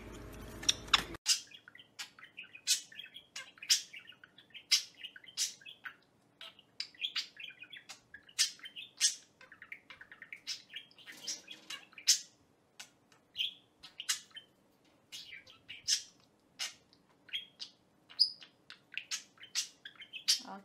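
Budgerigar chirping: a quick, busy series of short, sharp high chirps and chatter, starting about a second in.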